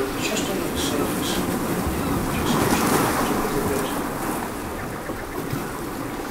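A rushing noise that swells to its loudest a little before halfway through and then eases off.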